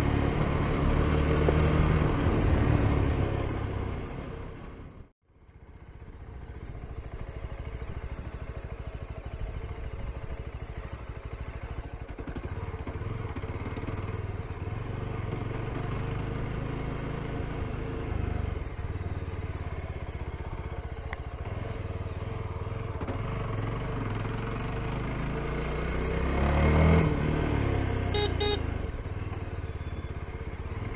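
Yezdi Scrambler's 334 cc single-cylinder engine running as the bike is ridden along a rough road and dirt trail. The sound drops out briefly about five seconds in, and the engine swells louder near the end.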